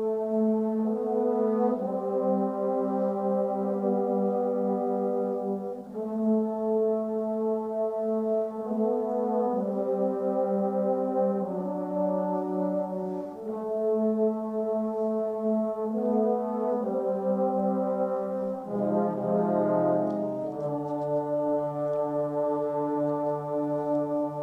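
Trombone choir playing slow, sustained chords, the harmony moving to a new chord every two seconds or so, with deeper bass notes coming in near the end.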